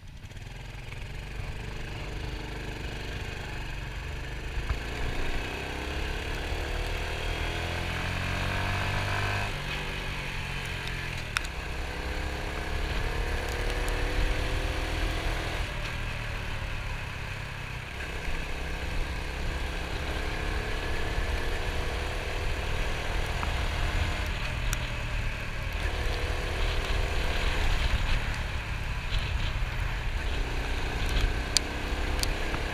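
Small dual-sport motorcycle engine pulling away and accelerating through the gears: its pitch climbs as it revs, then drops abruptly at each gear change, three or four times over the half minute, over a steady low rumble.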